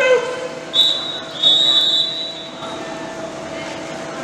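Referee's whistle blown twice in a water polo game: a short blast about three-quarters of a second in, then a longer blast of about a second. A steady hum carries on underneath once the whistles stop.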